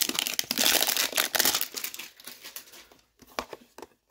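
Plastic shrink-wrap crinkling and tearing as it is peeled off a cardboard trading-card hanger box. The crackling is busiest in the first two seconds, then thins to a few scattered crinkles.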